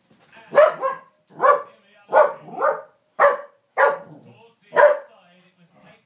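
Cardigan Welsh Corgi barking about seven times in quick succession, loud and excited, at the racehorses running on the TV screen.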